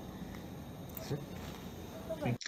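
Steady low hiss from the soundtrack of a recorded surgical video shared over a video call, with a brief faint voice about a second in.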